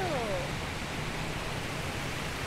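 Water rushing over a low concrete spillway, a steady even rush, with a faint voice briefly at the start.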